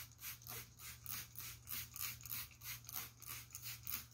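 Trigger spray bottle pumped rapidly again and again, about three short hissing squirts a second, misting water onto cloth to dampen it before ironing.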